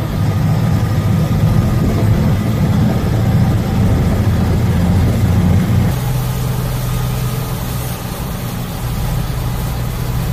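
Heavy military truck's diesel engine running, heard from inside the cab: loud for the first six seconds, then, after a sudden change, a quieter steady engine drone with a constant low hum as the truck drives on.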